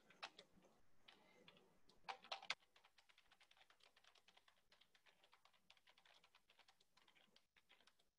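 Faint typing on a computer keyboard: a few louder key clacks bunched together about two seconds in, then a quick, steady run of soft key clicks.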